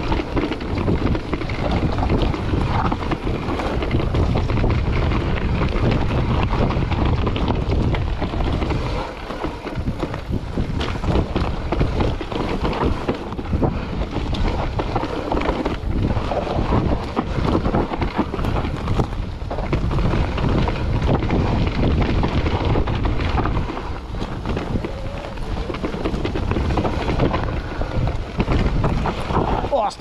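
Wind buffeting the camera microphone of a mountain bike riding a forest dirt trail, mixed with the tyres rumbling over the rough ground and the bike rattling. It is continuous and uneven, rising and dipping with speed.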